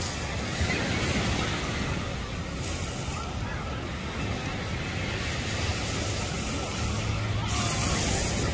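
Steady beach ambience: surf washing on the shore under a low rumble, with scattered chatter from beachgoers.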